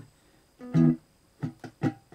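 Three-string cigar box guitar strummed with the strings damped: one short chord, then three quick choppy strums in a row, each cut off sharply.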